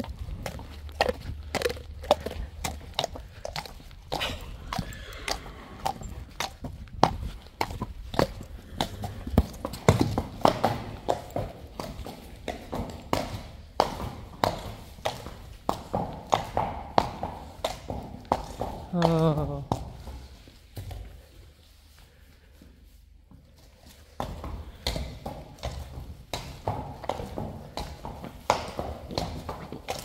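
Friesian horse walking close by on hard ground, hooves clopping in an irregular run of knocks, with a short call falling in pitch about two-thirds of the way through and a brief quieter spell just after.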